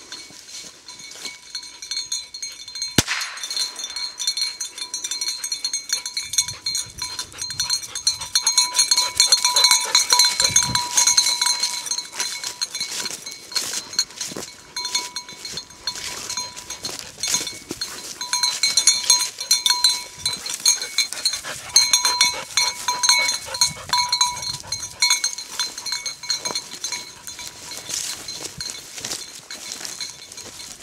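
A small metal bell on an English setter's collar clinking rapidly and without a break as the dog moves, loudest in two stretches, one about a third of the way in and one about two thirds of the way in. A single sharp knock sounds about three seconds in.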